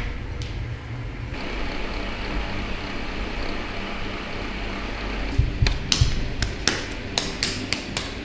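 Electric desk fan running with a steady whoosh of air for a few seconds, then a quick series of sharp taps and knocks near the end.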